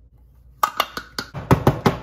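A filled loaf pan rapped repeatedly on a glass-top stove to settle the batter: a run of sharp knocks, about five a second, starting about half a second in and growing louder.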